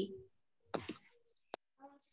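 A single sharp computer-mouse click about one and a half seconds in, with faint brief voice fragments from the call around it.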